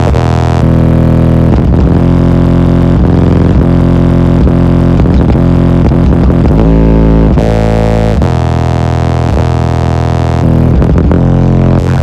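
A rap track's bass played very loud through six Sundown SA v2 15-inch subwoofers, heard from inside the vehicle's cabin. Deep, sustained bass notes dominate and change pitch every second or so, with a few short breaks.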